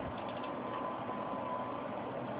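Steady background hum and hiss from the recording setup, with a faint high steady tone and no distinct events.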